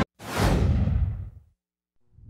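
A whoosh sound effect marking a news-bulletin transition: a sweep of hiss that falls away and fades out over about a second.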